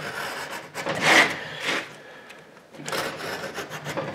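Utility knife blade scoring through the paper back and gypsum of a piece of drywall: a few scraping strokes, the loudest about a second in.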